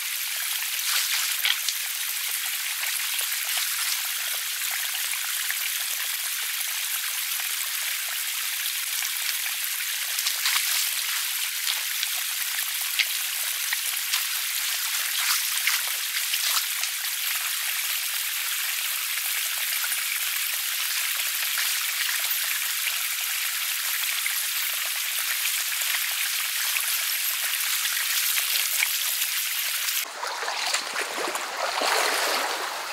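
Shallow stream running steadily over stones, with irregular small splashes and drips from a person wading and working with his hands in the water.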